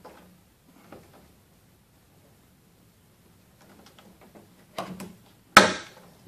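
Hands working a nylon webbing strap over a bolt on a plastic trash can lid: light clicks and rustles in the second half, ending in one sharp tap on the plastic just before the end.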